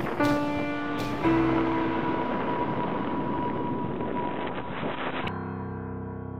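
Solo piano music: a few notes struck in the first second and a half, then left ringing and slowly fading. A steady hiss underneath cuts off suddenly about five seconds in.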